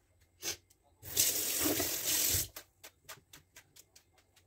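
Kitchen sink tap run briefly, a steady rush of water lasting about a second and a half, then shut off, followed by a string of short ticks.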